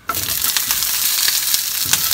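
Pieces of white spring onion (negi) sizzling in hot sesame oil in a frying pan as they are laid in. The sizzle starts suddenly at the beginning and runs on steadily with fine crackles.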